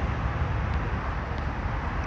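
Steady background room noise of a car dealership waiting area, a low rumble and hum with no one speaking close to the microphone.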